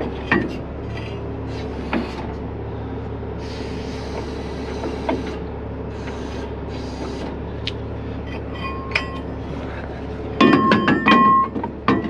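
Heavy wrecker's diesel engine running steadily, with occasional light metal clicks from the underlift and fork hardware and a hiss of about two seconds near the middle. Near the end comes a run of loud metallic clanks and rattles.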